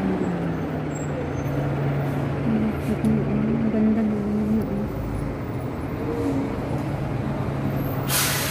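Street traffic noise with a steady low engine hum, and a faint voice in the background in the middle.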